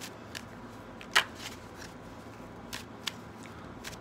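A deck of tarot cards being shuffled by hand: a string of soft, irregular card snaps, with one louder snap a little over a second in.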